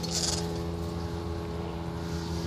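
A steady low mechanical hum with several held tones, unchanging in pitch, with a brief hiss just after the start.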